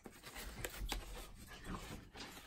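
Faint rustling and rubbing of a small cardboard box and its contents being opened and handled, with a couple of light clicks and a soft low bump about a second in.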